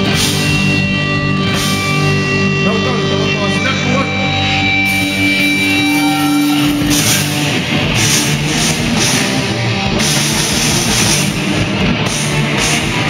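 Live heavy rock band: distorted electric guitars hold ringing chords over bass, then about seven seconds in the drums come in with repeated cymbal crashes and the full band plays on.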